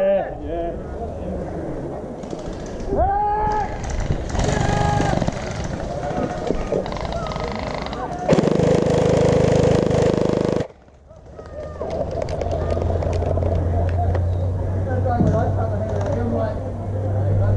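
Players shouting in the distance, then an electric gel blaster firing a full-auto burst of about two seconds that stops suddenly.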